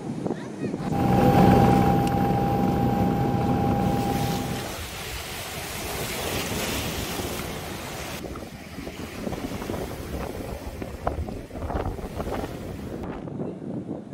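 Wind buffeting the microphone over choppy waves slapping on a flood-swollen reservoir. A steady, level-pitched drone sounds for about four seconds near the start, louder than the wind and water.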